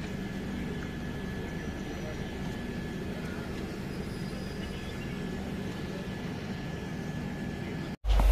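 Railway station platform ambience: a steady low hum with indistinct distant voices, and a faint high steady tone running through it.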